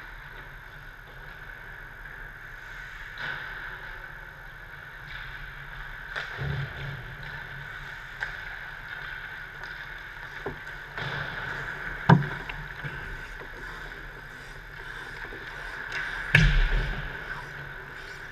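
Ice hockey rink: skates scraping and gliding on the ice over a steady hum, with sharp cracks of sticks and pucks. The loudest crack comes about two-thirds of the way through, and a heavy thump follows near the end.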